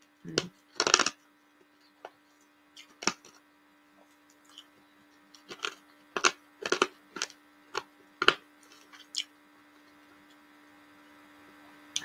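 About a dozen short, sharp clicks and taps at irregular intervals close to the microphone, the loudest two just after the start, over a steady low electrical hum.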